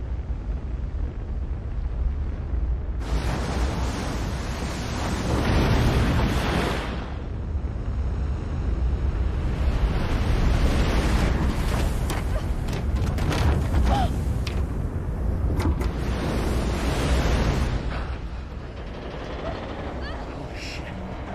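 Film sound effects of a giant ocean wave: a deep, steady rumble with two long swells of rushing roar, the second broken by several sharp cracks.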